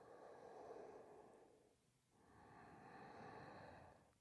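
Faint ujjayi breathing, the audible throat breath of Ashtanga yoga: one long breath, a pause of about a second, then another long breath.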